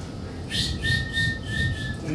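A man whistling a steady high note into a microphone, with short breathy hisses repeating about three times a second over it. It starts about half a second in. He is imitating a night call that sounds like a bird.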